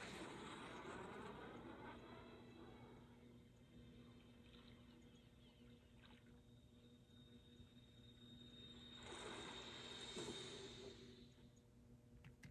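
Faint video-game cutscene audio from computer speakers: a swell of noise at the start that fades over a few seconds, and another about nine seconds in, over a faint steady hum.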